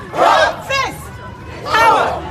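A crowd of marchers shouting a protest chant together in short, loud phrases, as a call-and-response.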